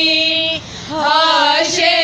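Women's voices singing an unaccompanied noha, an Urdu lament: a long held note breaks off about half a second in, and after a short breath the singing resumes with a wavering, ornamented melody.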